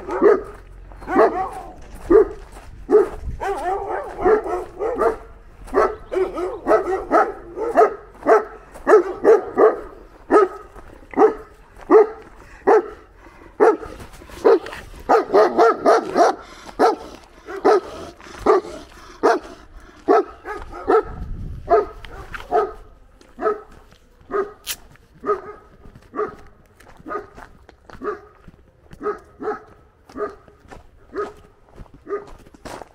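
A large dog barking repeatedly in a steady run of barks, about two a second, a little fainter in the last third.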